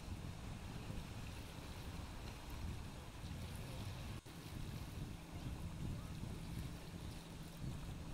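Wind on the microphone and small waves washing against shoreline rock, a steady outdoor noise with a momentary dropout about four seconds in.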